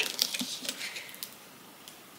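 Faint crinkling of plastic shrink-wrap and small snips of scissors cutting it off a book, mostly in the first second and then fading.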